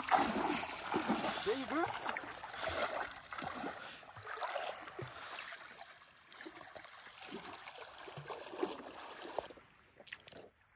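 Distant voices of people swimming in a river, with water splashing and running.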